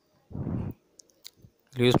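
A short puff of breath noise close to the microphone and two small mouth clicks in a pause, then a man's voice starts speaking near the end.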